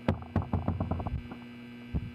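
Short film's sound design: a rapid, irregular string of crackling clicks over a steady hum. The clicks die away about two-thirds of the way in, leaving the hum alone, with one more sharp click at the end.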